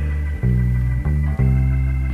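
Band accompaniment of a blues recording: bass guitar and guitar playing held notes, the bass changing pitch several times.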